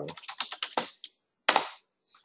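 Computer keyboard typing: a quick run of keystrokes, then a single louder keystroke about a second and a half in, the Enter key submitting the typed task.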